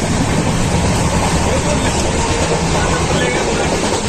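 Steady loud running noise of a passenger train, heard from inside the coach.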